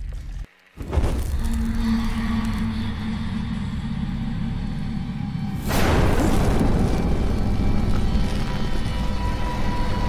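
Horror film score: after a brief drop-out, a low eerie drone with held tones, then about six seconds in a sudden loud boom that stays loud under the music.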